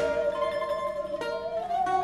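Bowed musical saw holding a long wavering note with a slow vibrato, sliding up a little near the end, over picked resonator guitar and upright bass.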